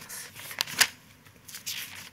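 Sheets of paper rustling and being turned over close to a desk microphone, with one sharp snap of paper a little under a second in.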